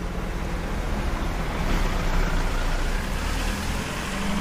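Outdoor city ambience: a steady low rumble of traffic with road hiss, swelling slightly toward the middle and easing off.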